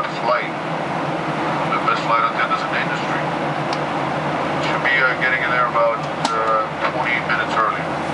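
Steady jet airliner cabin noise from the engines and airflow during the climb, with indistinct voices over it several times.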